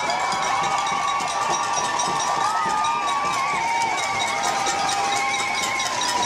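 Large crowd applauding and cheering, with several long held cheers sounding over steady clapping.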